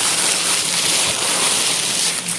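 Crumpled brown kraft packing paper crinkling and rustling without a break as a hand pushes through it inside a cardboard box.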